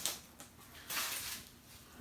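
Items being handled on a tabletop: a light knock at the start, then a short scrape or rustle about a second in as a small boxed toy is moved.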